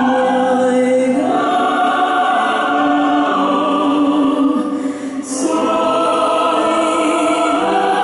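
A choir singing slow, sustained chords that move to a new chord every couple of seconds. About five seconds in there is a brief break with a short hiss before the chord returns.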